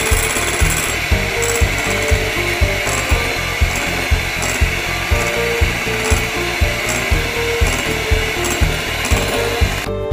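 Electric hand mixer running steadily, its beaters whipping egg yolk and powdered sugar in a glass bowl. It cuts off suddenly at the very end.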